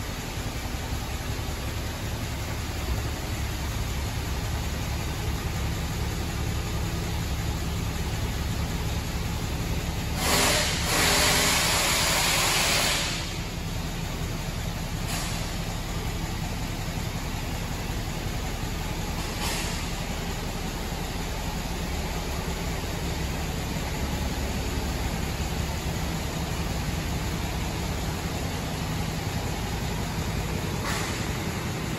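Cummins X15 inline-six diesel engine idling steadily in a 2018 International LT truck. About ten seconds in, a loud hiss of air lasts about three seconds, with two brief, fainter hisses a few seconds later.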